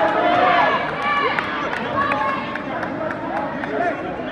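Many overlapping voices of onlookers at a jiu-jitsu match, talking and calling out at once so that no single voice stands out.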